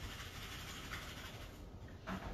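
Faint, steady scratchy rubbing of a paintbrush being cleaned, its bristles scrubbed against a surface.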